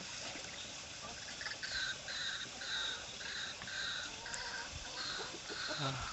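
A bird calling in a rapid, even series of short, high two-toned notes, two or three a second, starting about a second and a half in.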